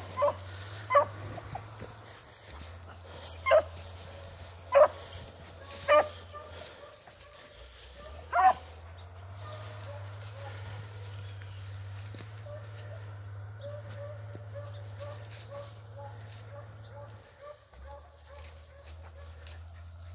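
Beagle baying while running a rabbit: about six short, loud bays spread over the first nine seconds, then fainter, quicker calls repeating for several more seconds.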